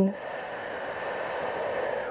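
A woman's long, steady audible exhale lasting nearly two seconds, swelling slightly as it goes, taken as a slow cleansing breath.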